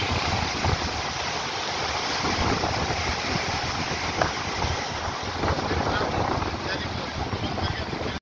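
Indus River floodwater churning and rushing at Kotri Barrage: a steady, loud rushing noise of turbulent water. Wind buffets the microphone, with a few brief knocks.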